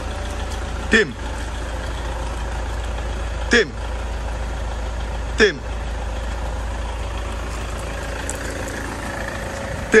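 Toyota Innova's 2KD four-cylinder turbodiesel running steadily at idle. Four short sounds that drop quickly in pitch cut in over it: about a second in, twice more a few seconds later, and again at the very end.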